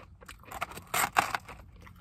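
Eating a crispy battered corn dog close to the microphone: a few short crunchy clicks and rustles about half a second to a second and a half in.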